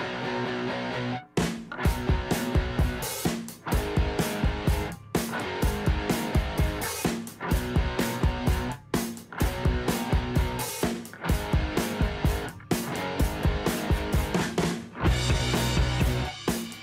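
Rock-style background music with guitar. A steady drum beat comes in about a second in.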